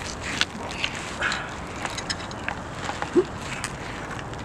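A few light, scattered clicks and knocks of hand tools on metal in a car's engine bay, over a faint steady background hiss.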